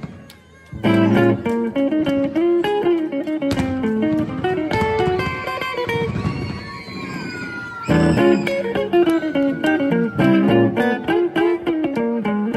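Semi-hollow-body electric guitar played live through an amplifier: after a short lull of about a second, quick runs of single picked notes, some of them bent or slid in the middle.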